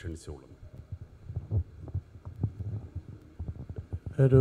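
A pause in a man's amplified speech: faint, irregular low thumps and murmur, with a low hum under them.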